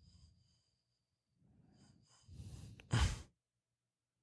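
A person breathing out heavily, close to the microphone: soft breathy rushes that build to one short, loud gust of breath about three seconds in.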